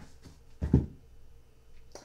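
Tarot cards being handled on a cloth-covered table: one short rustle and tap about two-thirds of a second in, against quiet room noise.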